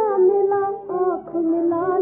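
Music from a 1939 Hindi film song: a high melody line over accompaniment, held notes gliding from one pitch to the next, with the thin, narrow sound of an old film recording.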